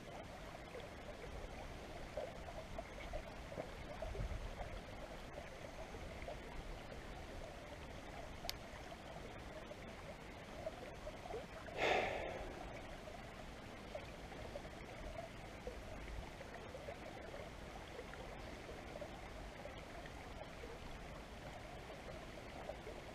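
Shallow river water running faintly and steadily over a weedy bed. About halfway through, a brief louder rush of noise rises and fades.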